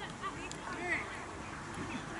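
A duck quacking, a short call about a second in, heard faintly over distant voices.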